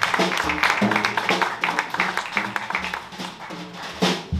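Live jazz, led by plucked electric bass notes over drum kit cymbal and snare strokes.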